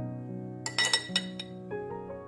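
A metal butter spreader clinking against a ceramic butter dish: three quick ringing clinks about a second in, over soft piano background music.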